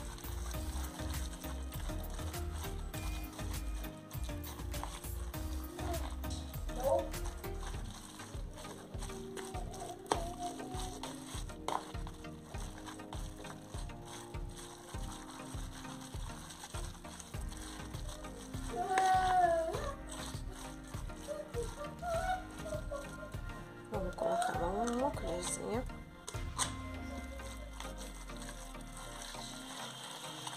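A fork scraping and clicking against a plastic bowl while stirring a sticky shredded-chicken and cream-cheese filling, in a fast, uneven run of small clicks. A brief sliding, pitched call sounds in the background about two-thirds of the way through, and another a few seconds later.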